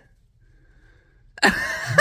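Near silence for about a second and a half, then a man's voice breaks into laughter near the end.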